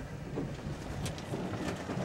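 A low steady rumble, with two sharp clicks in the second half.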